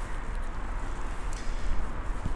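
Steady outdoor background noise: a low rumble with a hiss over it and no distinct events.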